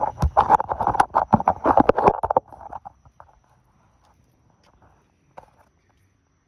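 Footsteps and handling noise from a phone being carried while walking: a quick run of knocks and rubbing on the microphone that stops about two and a half seconds in, leaving only a few faint ticks.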